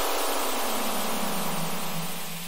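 A synthesised white-noise sweep, falling in pitch and slowly fading: a transition effect in an electronic dance music mix.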